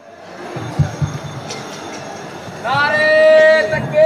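A man's voice over the loudspeaker holds one long, drawn-out chanted call, starting near the end. Before it there are a few seconds of low crowd noise.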